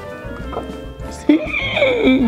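Background music, with a shrill, wavering horse-whinny sound effect that starts a little past halfway and falls in pitch.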